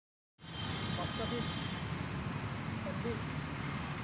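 Outdoor roadside ambience: a steady rumble of road traffic with faint, distant voices, beginning about half a second in.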